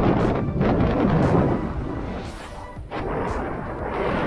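Wind buffeting the microphone of an action camera held out on a pole by a skier in motion, with the skis scraping and hissing over groomed snow. It is loudest in the first second or so and eases off briefly near the end.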